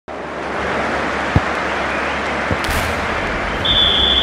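Channel logo intro sound effect: a loud, steady rushing whoosh of noise with two short low thumps, about one and a half and two and a half seconds in, ending in a steady high tone near the end as the logo appears.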